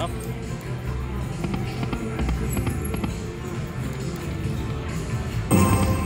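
Lock It Link Hold On To Your Hat video slot machine sounding its electronic reel-spin effects over casino-floor chatter, with a louder burst of machine tones about five and a half seconds in as the reels land on a win.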